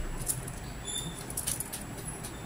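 Tarot cards being handled and laid down on a cloth-covered table: faint, scattered light rustles and small ticks.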